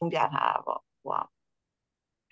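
A person's voice speaking a few quick syllables over a video-call connection, cut to dead silence after just over a second.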